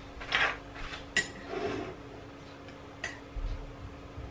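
Crockery and cutlery being handled while making tea: a short rustle, then two sharp clinks with a brief ring, about a second in and about three seconds in. A steady low hum runs underneath.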